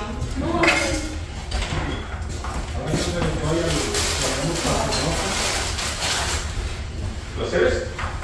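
Several people chatting over a meal, with dishes and cutlery clinking and a kitchen drawer being handled.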